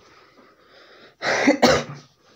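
A person coughing twice in quick succession, a little past a second in.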